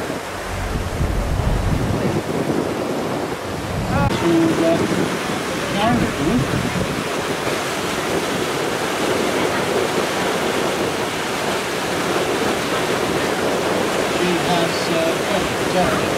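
Steady rush of water churning in a ferry's wake, with wind buffeting the microphone.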